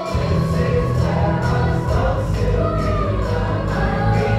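Youth choir singing with a full accompaniment carrying a steady beat and sustained low bass notes; the whole ensemble comes in loudly right at the start after a quieter passage.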